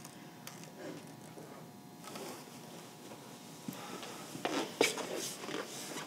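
Quiet room tone with a faint steady hum. From about halfway through come a few soft rustles and light clicks, a handful of them close together near the end.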